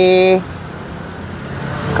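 A drawn-out spoken word ends about half a second in, leaving low, steady road-traffic noise that swells slightly toward the end, as of a car going by.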